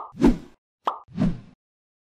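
Two pop sound effects from an animated subscribe end screen, each a short click followed by a low thud, about a second apart.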